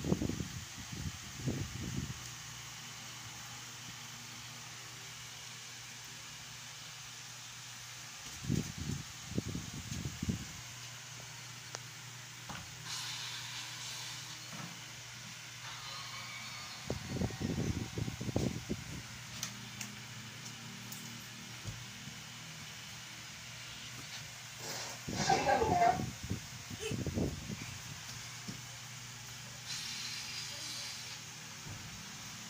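A dog nibbling and snuffling through another dog's coat in grooming, in four short bursts a few seconds long, over a steady low hum.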